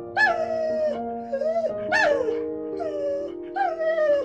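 A husky giving a run of about five short howls, each rising and then falling in pitch, over soft background music.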